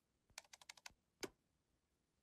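Faint typing on a laptop keyboard: a quick run of about seven key clicks, then one more click a moment later.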